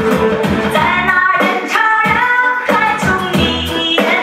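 Chinese pop song: a woman sings the melody over a steady dance beat.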